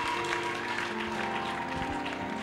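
Background church music: soft held chords playing steadily, with a light haze of crowd noise.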